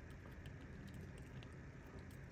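Quiet room tone with a few faint clicks from a plastic action figure and its accessory being handled.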